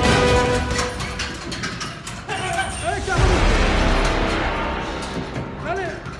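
Background music that stops about half a second in, followed by a few sharp impacts of gloved punches on a heavy bag and people's voices in the gym.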